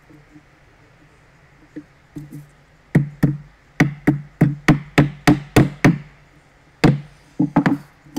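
Small hammer tapping a black plastic kit strip down onto wooden dowels: a quick series of sharp knocks, about three a second, beginning about three seconds in. After a short pause come one more knock and a quick cluster of three near the end.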